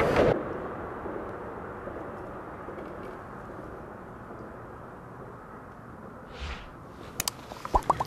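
A low, steady outdoor rumble slowly fading, then a few sharp clicks near the end as a rod is jerked up to set the hook on a crappie.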